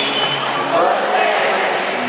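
Concert audience voices, singing and talking close to the microphone, over a live song with acoustic guitar playing through an arena's sound system.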